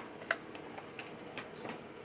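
A few light clicks and taps from a metal Blu-ray Steelbook case being handled and moved: one sharper click about a third of a second in, then fainter ticks later.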